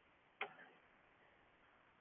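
Near silence, with one brief faint click a little under half a second in.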